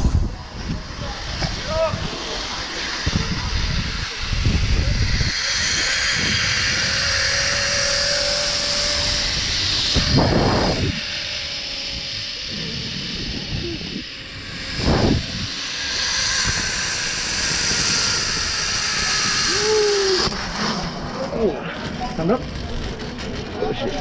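Zip-line trolley running along the cable at speed, a steady high whir, with wind rumbling on the microphone in gusts. There are short vocal cries near the start and near the end.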